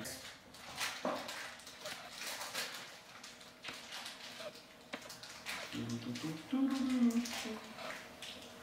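People chewing pieces of a chocolate-covered almond bar: faint crunches and mouth clicks, then, about six seconds in, a closed-mouth 'mmm' of someone tasting it that lasts about two seconds.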